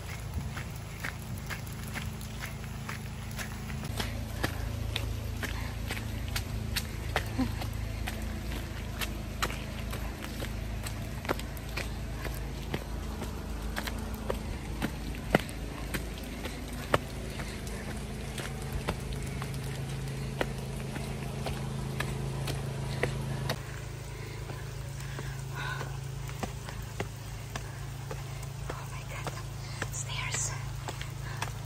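A trail runner's footsteps on a wet forest path, heard from a handheld camera as many irregular sharp taps over a steady low rumble from the microphone.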